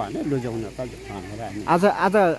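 Speech only: a man talking, with the voice growing louder near the end.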